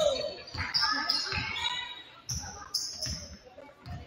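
Basketball dribbled on a hardwood gym floor, bouncing steadily about twice a second, with voices calling out in the echoing gym.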